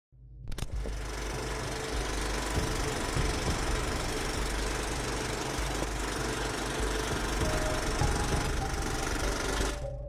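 Film projector running: a steady mechanical clatter with hiss and low hum. It cuts off suddenly just before the end.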